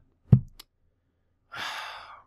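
A man sighing, a breathy exhale of about two thirds of a second starting past the middle, preceded by a short sharp knock near the start.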